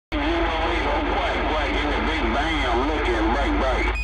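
A CB radio receiving on channel 11: several voices talk over one another through static, in muffled, narrow-band audio, the jumble typical of distant skip stations. A short beep sounds right at the end.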